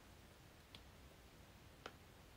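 Near silence with two faint, short clicks, about three-quarters of a second in and again near the end, from plastic snack pouches being handled.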